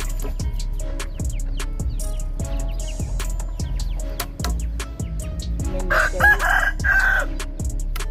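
A rooster crowing once, for about a second and a half, starting near six seconds in, over rhythmic background music.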